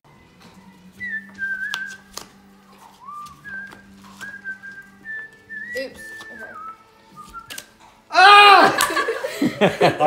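A person whistling a tune, single notes held and stepping up and down in pitch, over sharp clicks of playing cards being passed and laid on a rug. Near the end, loud shrieks and laughter break out.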